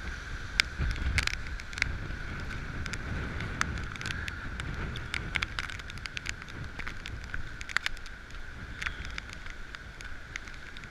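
Storm-force wind buffeting the microphone as a low, gusting rumble, with many irregular sharp taps of heavy rain striking the camera.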